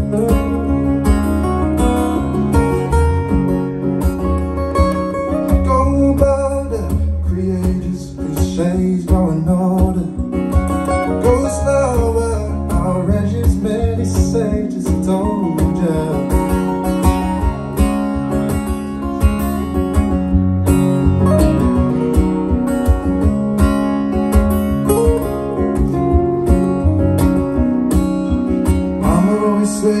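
Two acoustic guitars playing an instrumental passage of a song, with strummed chords in a steady rhythm. A sung vocal comes back in right at the end.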